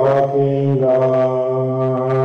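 Slow chant-like singing with long held notes over a steady low drone; the melody steps to a new note about a second in.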